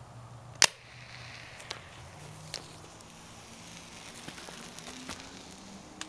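A single sharp pop about half a second in as the homemade pull-ring pencil flare fires, followed by a few faint scattered clicks.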